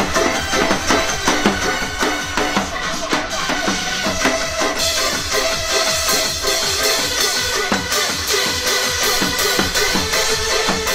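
A Korean barrel drum (buk) struck in rapid, dense rhythm over recorded backing music with held tones. A brighter, hissier layer like cymbals joins about halfway through.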